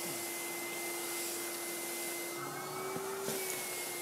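Vacuum cleaner running steadily, a motor whine over rushing air. Its pitch lifts slightly for about a second past the middle, with two faint knocks.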